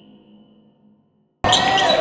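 A ringing logo-sting tone fades away, then about a second and a half in the sound of a basketball game cuts in suddenly: the ball bouncing on the hardwood and sneakers squeaking, echoing in a gym.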